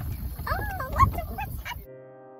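Wind rumbling on the microphone of a moving open golf cart, with high, wavering squeals from a child's voice rising and falling about half a second in, loudest around one second. Just before the end the sound cuts to soft electric piano music.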